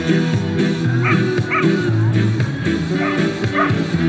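Upbeat music with bass and guitar playing steadily, while a dog barks in short yaps over it: twice about a second in, then a few more times near the end.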